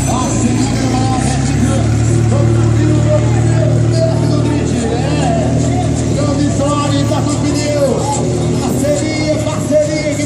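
Rally pickup truck engines running at low revs, a steady low hum that is strongest early on, under voices and background music.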